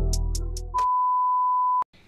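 The tail of an upbeat intro music track fades out, followed by a single steady electronic beep at a pitch around 1 kHz lasting about a second, which cuts off suddenly.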